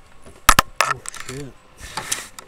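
Handling noise as the camera is grabbed and moved: two sharp knocks, the first the loudest, then rustling and a short rush of noise near the end, with a man saying a quick "yeah" in between.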